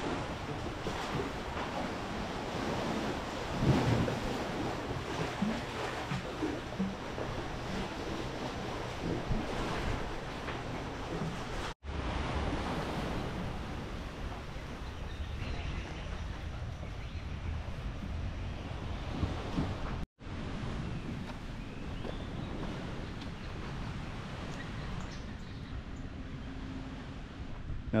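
Steady rushing outdoor noise, mostly wind on the microphone. It cuts out for an instant twice, once about 12 seconds in and again about 20 seconds in.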